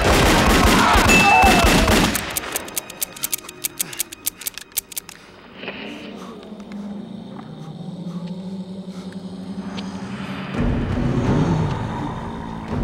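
Film soundtrack: handgun fire in dense bursts over music and crowd noise for about two seconds, then a quick run of fainter sharp cracks that stops about five seconds in. Low, sustained, ominous film music follows and swells near the end.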